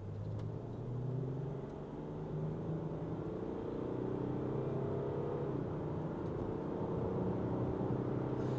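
Land Rover Discovery 4's 3.0 SDV6 twin-turbo diesel V6 heard from inside the cabin, pulling under acceleration up a hill. The engine note rises slowly, dips once just past halfway, then climbs again.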